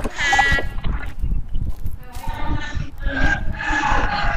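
Children's voices heard through a video call: a drawn-out, high call near the start and more drawn-out calling in the second half, over a low rumble of microphone noise.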